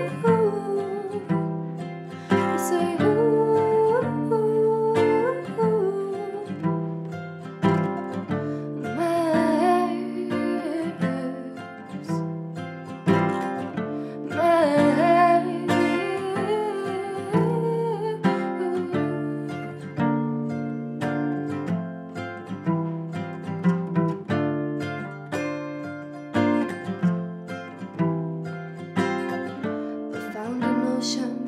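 Acoustic guitar strummed in a steady rhythm, with a woman singing over it.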